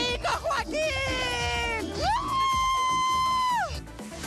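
A young woman screaming over loud club music: a short falling cry, then a long high-pitched scream held level for about a second and a half that drops away near the end.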